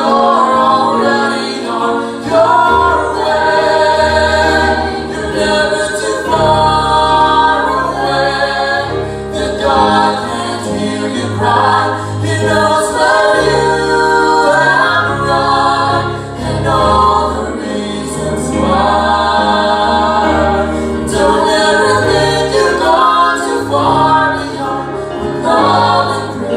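A mixed vocal trio, two women and a man, singing a slow gospel song in harmony into handheld microphones, with several voices sounding together on every line.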